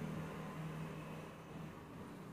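Steady low hum with a hiss over it.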